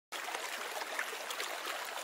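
Shallow creek running over rocks: a steady rush of flowing water with small trickling splashes.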